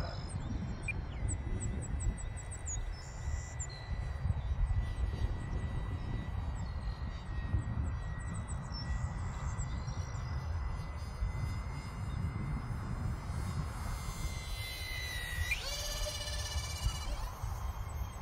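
Wind buffeting the microphone, with a faint, thin, steady whine from the E-flite UMX A-10's twin electric ducted fans high overhead. Near the end the whine rises slightly and then drops sharply in pitch as the plane goes by.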